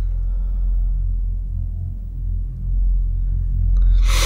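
A steady, deep rumble with a couple of faint level tones above it.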